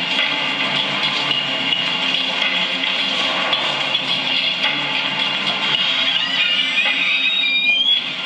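Background music with a run of rising notes near the end.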